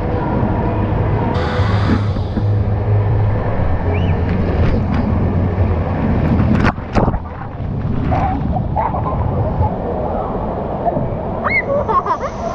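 Rushing water and the echoing din of an indoor waterpark heard from an inner tube on a river ride, with a cascade of water splashing down onto the tube just past halfway through.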